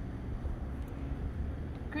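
Steady low outdoor background rumble with a faint hiss above it, and no voice until speech starts right at the end.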